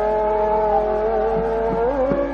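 Hindustani classical music in raga Hamir: one long held note that bends in pitch near the end, over a steady drone.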